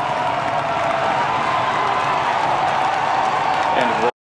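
A large crowd cheering and clapping, a steady din of many voices and applause.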